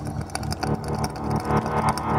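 Dark psytrance track in a short break where the kick drum is absent, leaving a fast, rolling synth bassline and processed synth textures; the kick drum comes back just after.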